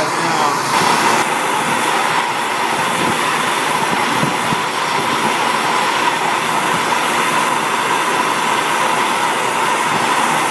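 Hand-held propane torch burning with a steady rushing hiss, with a faint steady tone in it.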